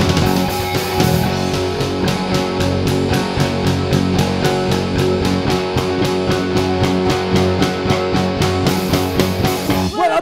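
Live rock band playing an instrumental break with electric guitar, bass guitar, keyboard and drums, the drums keeping a steady beat; no singing.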